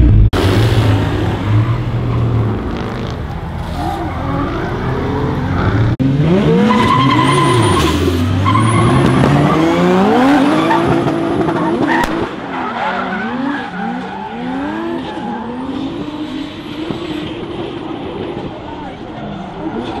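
Drift cars, among them an orange Toyota Supra, with their engines revving hard up and down over and over as they slide, and tyres skidding. The revs rise and fall in quick repeated sweeps, about one a second, from about halfway through.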